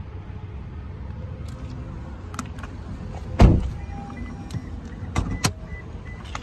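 A car door on a Toyota SUV shuts with a single heavy thud about three and a half seconds in. Near the end come two sharp clicks of a door latch being worked.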